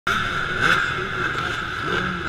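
Several dirt bike engines running together on a race start line, their pitch rising and falling briefly as throttles are blipped.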